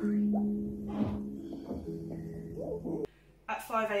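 A woman's low, drawn-out moan as she breathes through a labour contraction, with breathy exhales, over soft steady background music. It cuts off sharply about three seconds in.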